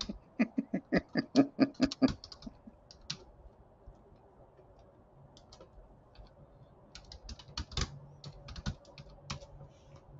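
A man laughs for about two seconds, then typing on a computer keyboard follows in scattered keystrokes, with a quicker run of keys near the end.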